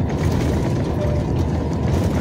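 Steady drone of a moving truck heard from inside its cab: engine and tyre-on-road noise, strongest in the low range.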